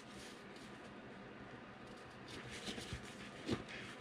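Faint handling noise: black fabric rustling and a thin wire frame lightly clicking and scraping as it is threaded through the fabric sleeve, a few soft clicks in the second half over a steady low hiss.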